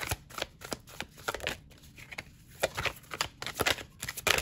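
A deck of tarot cards shuffled by hand: a quick run of soft card slaps and flicks, getting busier in the last second or so.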